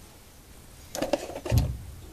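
Valves being handled in the cast-iron cylinder head of a Fairbanks-Morse Dishpan Z engine, a few light metal clicks coming about a second in, then a low thump.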